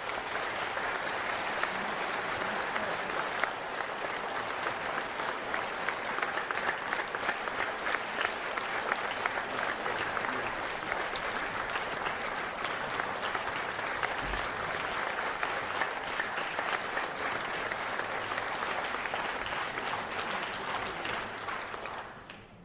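Audience applauding: a dense, steady mass of many hands clapping, following the close of an orchestral passage. It dies away suddenly near the end.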